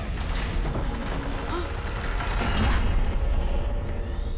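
Cartoon sound effect of a massive mechanical gate opening: a low rumble with many rapid clanking, ratcheting clicks and creaks, growing loudest about three seconds in.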